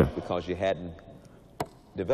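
A man's voice trailing off, then a single sharp click about a second and a half in.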